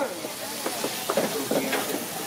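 Tortillas frying in oil on a street-stand flat-top grill, a steady sizzling hiss, with faint background chatter of voices.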